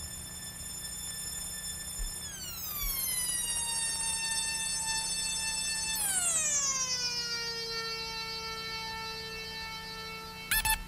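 Electronic synthesizer tone held steady, then gliding down in pitch about two seconds in and again about six seconds in, each time settling on a lower, held note.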